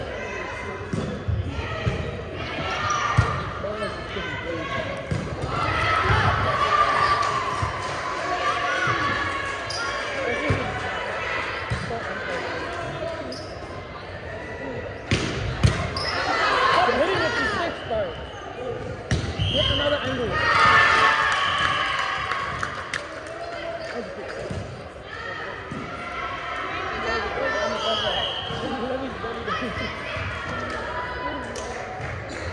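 Indoor volleyball rally sounds in a large echoing hall: players and spectators shouting and calling, sharp single smacks of the ball, and short whistle blasts about twenty and twenty-eight seconds in.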